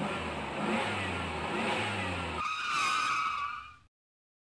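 A motor vehicle engine sound effect, running and revving, replaced about two and a half seconds in by a high steady tone; the sound cuts off suddenly shortly before the end.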